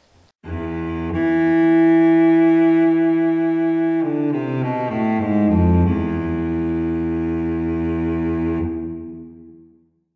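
Solo cello music: a long held bowed note, then a short falling run of notes about four seconds in, settling on another held note that fades out near the end.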